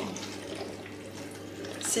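White cooking wine pouring in a thin stream from a carton into a stainless steel cooker bowl of cut vegetables: a faint, steady trickle of liquid.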